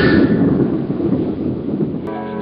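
Film sound effect for a magical vanishing in a burst of smoke: a loud, rumbling whoosh that slowly fades over about two seconds.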